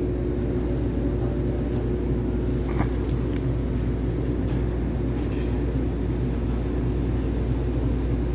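Steady low rumble and hum of an electric multiple-unit commuter train, heard from inside its passenger cabin, with one brief higher-pitched sound about three seconds in.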